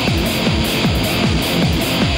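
Live electronic-rock band music, loud and steady: a driving groove of low hits that each fall in pitch, about four a second, under a steady high wash of noise.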